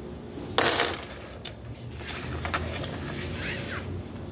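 Handling noise at a table: a short loud rustle about half a second in, then light scattered clicks of small plastic Lego pieces.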